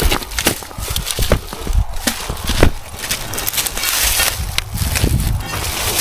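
Irregular cracks and crunches of a rotten pine stump and the debris around it being broken apart, over a low rumbling on the microphone.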